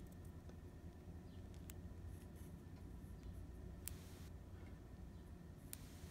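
Near silence: low steady room hum with a few faint small clicks from handling fountain pen parts, the nib and feed.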